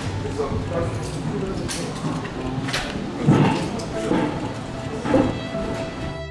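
Indistinct voices and talk in a room, with a couple of sharp clicks.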